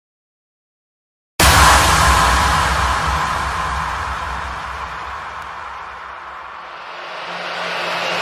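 Intro sound effect: silence, then a sudden loud hit with a deep rumble and a rushing noise that slowly fades, followed by a rising swell near the end.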